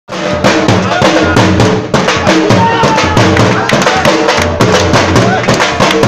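Dhol, the double-headed Punjabi barrel drum, beaten with sticks in a fast, loud, driving dance rhythm.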